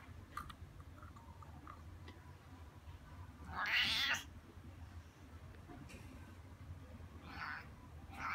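Cat meowing: one loud meow about three and a half seconds in, then a shorter, fainter meow near the end.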